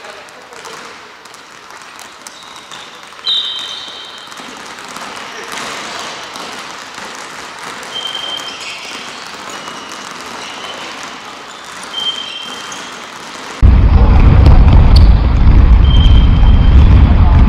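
Echoing sports-hall ambience during a futsal game: distant players' voices and play on the court, with a few brief high squeaks like sneakers on the wooden floor. Near the end the sound cuts abruptly to a much louder low rumble on the microphone.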